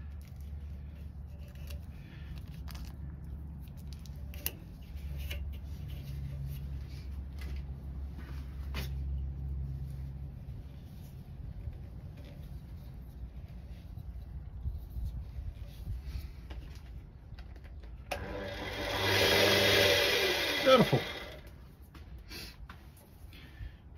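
Soft handling clicks and rustles as a strip of tape is wrapped by hand around a turned pen blank on a stopped lathe, over a low steady hum that fades out about halfway through. Near the end a loud rushing noise of about three seconds ends in a falling whine.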